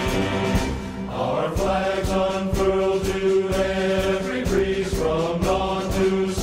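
Music with a steady beat, sustained chords and chant-like choral voices without clear words.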